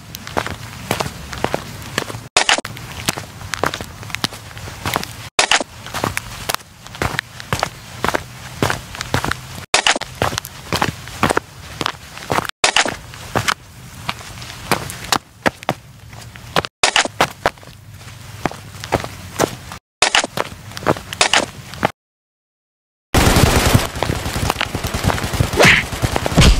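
A run of short clicks, knocks and pops over a low hum, chopped into clips every few seconds by hard edits, with about a second of dead silence shortly before the end and a denser spell of noise after it.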